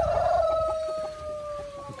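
Rooster crowing: one long, drawn-out call that falls slightly in pitch and fades out near the end.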